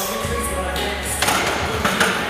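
Background music with a steady bass line and two sharp hits in the second half.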